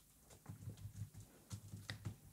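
Near silence with a few faint, soft taps from a computer keyboard, and a sharper small click near the end.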